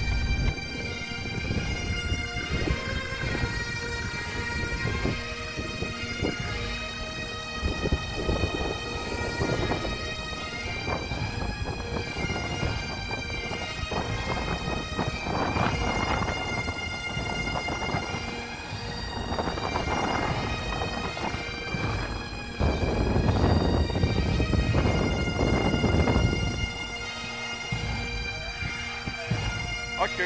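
Bagpipe music: steady drones under a piped melody, over a low rumbling noise that grows louder for a few seconds near the end.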